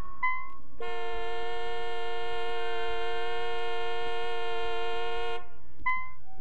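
A car horn sounds one long, steady two-tone blast of about four and a half seconds, starting and stopping abruptly. A short high beep comes just before it.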